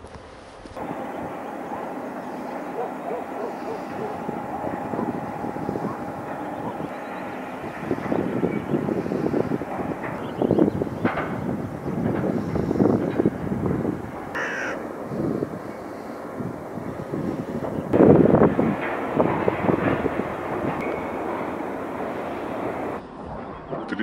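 Harsh bird calls, repeated many times, over outdoor background noise.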